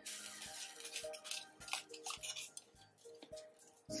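Soft background music with held melodic notes, under faint clinks of a metal spoon stirring in a stainless steel pot of simmering tea.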